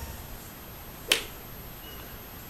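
A single sharp click about a second in, over faint steady background noise.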